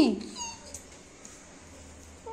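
A puppy gives a brief, faint, high whimper about half a second in, just after the tail of a woman's voice.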